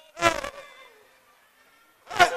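A single short, loud, buzzy vocal cry about a quarter second in, fading away over the following second.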